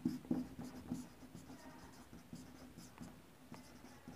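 Marker pen writing on a whiteboard: faint, short scratching strokes and taps of the felt tip on the board, a little louder in the first second.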